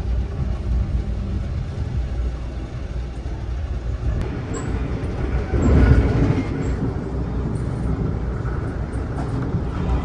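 Amtrak passenger train running at speed, heard from inside the coach: a steady low rumble of wheels and track that swells briefly about six seconds in.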